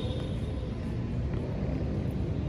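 Wind buffeting the microphone of a handheld camera: a steady, unevenly flickering low rumble.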